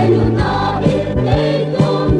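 Choir singing a gospel song over instrumental backing with a steady beat.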